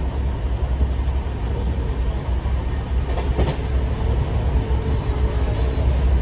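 Steady low rumble of an Indian Railways sleeper coach running on the track, heard from inside the coach, with a short knock about three and a half seconds in.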